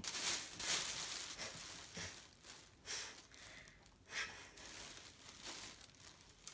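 Thin plastic shopping bag rustling and crinkling as it is handled, in irregular bursts, loudest in the first second.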